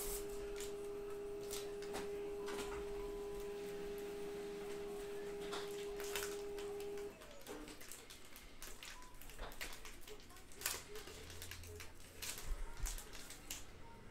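A baseball card pack's wrapper being torn open by hand, crackling and crinkling in short bursts as the cards are pulled out. A steady hum sounds under it and cuts off suddenly about halfway through.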